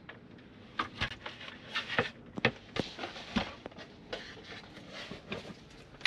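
Handling noise from a wooden table and its aluminium table mount being moved into storage position against the wall: scattered clicks, knocks and rubbing.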